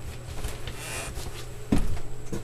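A person shifting and getting up from a seat: rustling and soft knocks, then a louder thump near the end, over a steady low hum.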